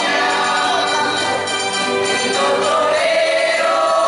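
Live folk music for a bolero dance: a group of singers with a rondalla of plucked guitars and other strings accompanying them, playing steadily.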